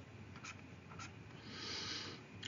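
Faint stylus strokes on a tablet: a couple of light taps, then a short scratching stroke near the end as a line is drawn.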